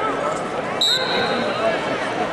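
Wrestling referee's whistle: one sharp, steady blast of under a second, about a second in, starting the action from the neutral position. Crowd chatter runs under it.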